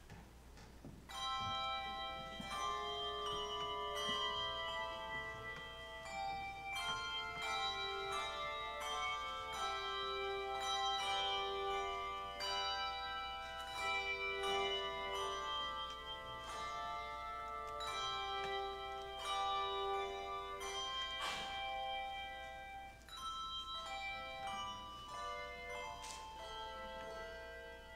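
Handbell choir ringing a piece: struck handbell notes and chords that ring on and overlap, beginning about a second in.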